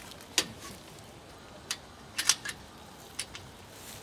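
Metal sliding-bolt latch on a mesh-net enclosure door being worked by hand: a handful of short, sharp metallic clicks, the loudest in a quick cluster a little past the middle.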